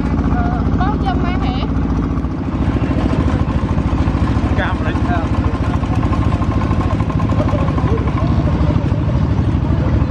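Small single-cylinder diesel engines of farm tractors running steadily under load with a fast, even chug while carrying riders along a dirt road. About two and a half seconds in, the sound dips briefly and changes. People's voices can be heard faintly over it.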